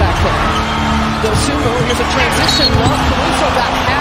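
Basketball court sound during a fast break: the ball bouncing and sneakers squeaking on the hardwood over crowd noise. A short high referee's whistle comes about two and a half seconds in, calling a hard foul.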